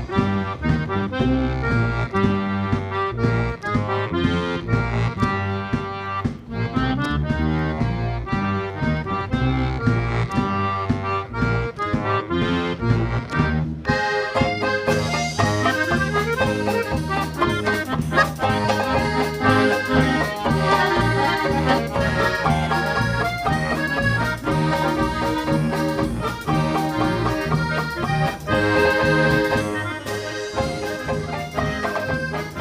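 Polka band music led by accordion, with a steady bass beat. The sound turns brighter about halfway through.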